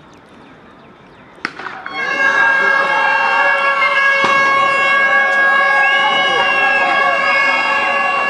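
A cricket bat strikes the ball with a sharp crack about a second and a half in. A loud, steady, horn-like tone then starts and holds, with shouting voices over it.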